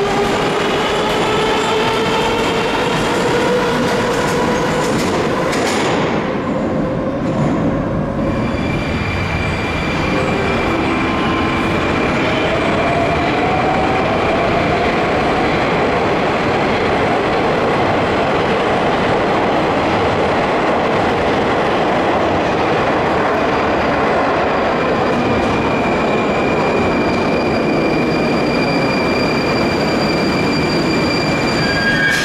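Moscow Metro trains. First a train runs through the station with the whine of its traction motors rising in pitch. Then, after a break, a steady rumble with a held high tone as an 81-740/741 train approaches the platform.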